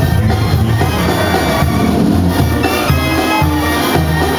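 Loud live Mexican band music with brass and a heavy, pulsing bass line, playing without a break.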